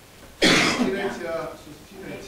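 A man's single loud cough about half a second in, followed by a short throat-clearing sound.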